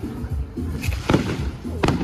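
Fireworks going off in a few sharp bangs, the loudest near the end, over music with a steady thumping bass beat.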